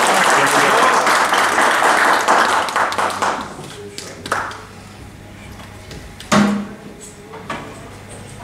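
A small group applauding, the clapping dying away after about three and a half seconds, followed by a few scattered sharp knocks, the loudest about six seconds in.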